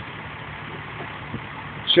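Steady background hum of a city street with traffic, heard through a phone microphone.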